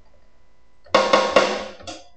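A sampled drum kit in the SampleTank plugin, played from a MIDI keyboard: a quick run of drum hits about a second in, ringing out and fading within a second.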